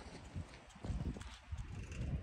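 Soft, irregular thuds of a donkey's hooves stepping on packed dry dirt as it shoves a large inflated ball along with its head.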